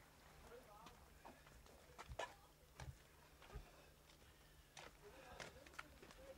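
Near silence broken by faint, irregular taps and scuffs of footsteps in sandals on sandy rock, with faint voices in the background.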